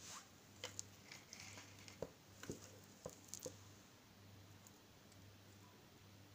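Faint clicks and light rustles from small objects being handled, clustered over the first three and a half seconds, then only a faint steady low hum.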